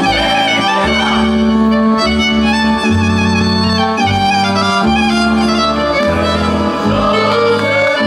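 Romanian folk dance music led by a fiddle, at a steady tempo over a bass line that changes note about once a second.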